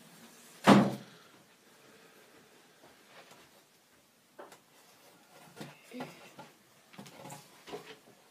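One sharp knock a little under a second in, followed by several lighter knocks and scrapes as a vivarium's furnishings and pieces of cork bark are handled.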